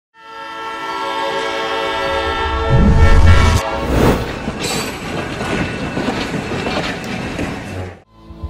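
Train sound effect: a long steady blast for the first three and a half seconds, swelling with a heavy low rumble near its end. Then the rush of a passing train, which fades out just before the end.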